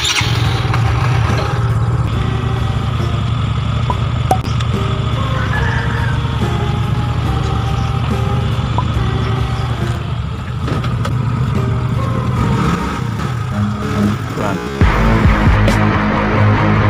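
Yamaha Xeon GT125 scooter's single-cylinder engine running steadily at idle under background music. Near the end the music turns louder and alone.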